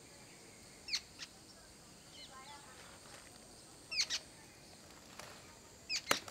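A few short bird chirps over a quiet outdoor background, each a quick falling note: one about a second in, a pair near four seconds and another at the end.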